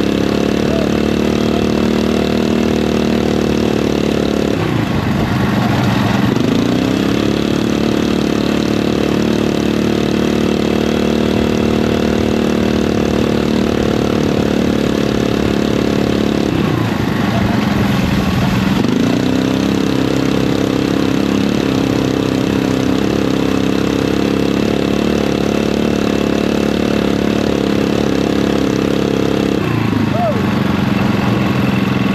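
Crosskart's Predator 459 single-cylinder engine running hard at a steady high pitch through a lap, heard onboard. Twice the revs drop and climb back up, about five seconds in and again about seventeen seconds in, as the driver lifts off and gets back on the throttle.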